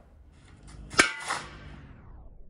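A faint rising hiss leads into a sharp metallic hit about a second in, followed by a lighter second hit, with a ringing tail that fades away.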